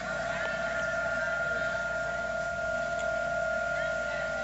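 A steady high-pitched tone, one unwavering note with its octave above, held for the whole pause.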